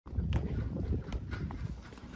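Beef cows trotting out of a pen through a metal wire-panel gate: a steady low rumble of hooves on dirt, with a few sharp knocks.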